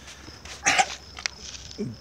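A Rottweiler gives one short, sharp breath out through the nose, a sneeze-like huff, a little over half a second in. Insects chirp faintly and steadily behind it.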